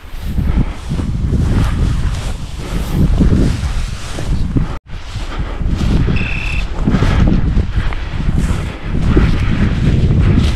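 Wind buffeting the microphone, with dry prairie grass and brush swishing against a walking hunter's legs and body. About six seconds in there is a single short high beep.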